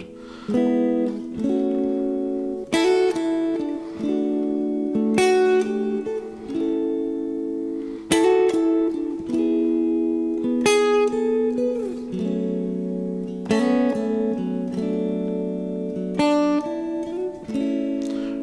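Clean electric guitar, a Telecaster-style solidbody, picking three-note major triad shapes and moving them from position to position along the neck. A new chord is struck every second or two and left to ring.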